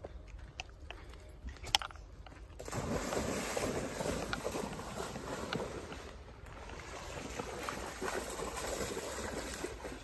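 A single sharp click about two seconds in, then a dog splashing and wading through shallow river water, a steady sloshing that goes on to the end.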